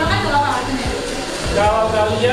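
People talking over background music, with a steady whirring hum underneath.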